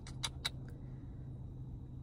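Low steady hum inside a parked car's cabin, with a few light handling clicks in the first second.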